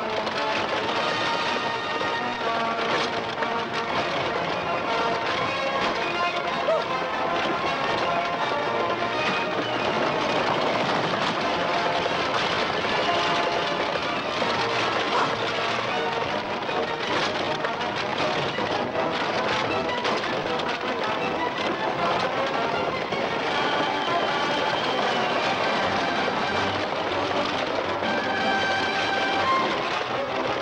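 Orchestral film score playing throughout with many held, layered notes, over the steady clatter and rumble of a horse-drawn stagecoach running at speed.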